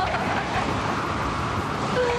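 A steady, loud rush of storm noise, with a woman gasping at the very start.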